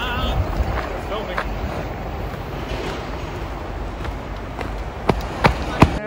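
Rumbling wind and handling noise on a handheld camera's microphone while walking, with three sharp knocks close together near the end, the loudest sounds.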